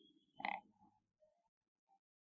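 Near silence: room tone, broken by one brief soft sound about half a second in.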